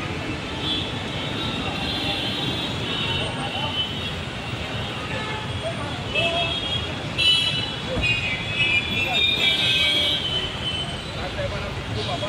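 Road traffic noise from cars queued and moving through a toll lane, with car horns sounding several times and people's voices mixed in.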